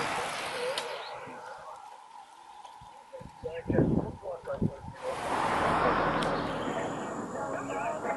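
Outdoor roadside ambience with brief, indistinct voices of nearby spectators about halfway through, then a steady rushing noise that sets in suddenly and runs on to the end.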